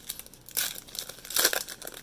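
Foil wrapper of a baseball card pack crinkling and tearing as it is opened by hand, in irregular crackles with the loudest burst about one and a half seconds in.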